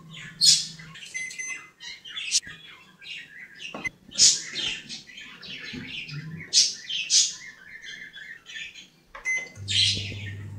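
Samsung convection microwave oven being set and started: a few short electronic beeps from the control panel, then a steady low hum as the oven starts running near the end. Short high chirps sound repeatedly throughout.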